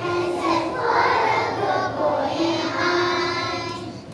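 A class of young children singing together in unison, holding long sung notes; the singing fades out near the end.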